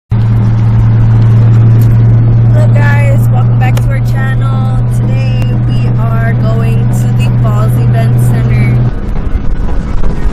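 Inside a car: a loud, steady low drone of the car's running, with a woman's voice talking quietly underneath it. The drone cuts off suddenly near the end.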